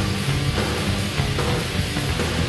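Heavy metal music, loud and dense throughout.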